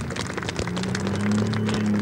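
Bandag Bandit show truck's engine running at a steady pitch, setting in about half a second in, under a dense crackle of clicks.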